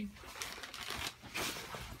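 Brown paper bag rustling and crinkling in irregular bursts as it is handled.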